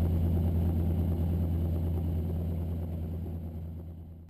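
Steady low engine drone that fades out over the last couple of seconds.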